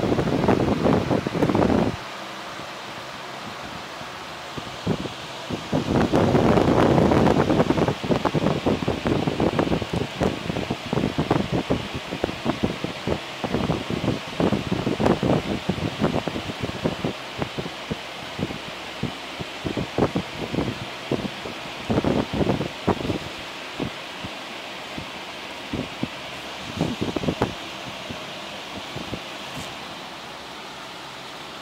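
Irregular rustling and knocking of handling and movement, heaviest for the first two seconds and again about six to eight seconds in, over a steady fan-like hiss.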